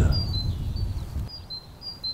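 A small songbird singing short, high, thin notes repeated a few times a second, alternating between two close pitches. A low wind rumble sits under it and fades out about a second in.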